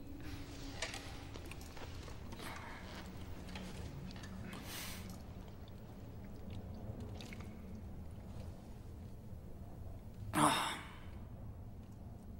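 Quiet room ambience with a steady low hum and faint rustles and breaths. About ten seconds in comes one short, loud breath from one of the men.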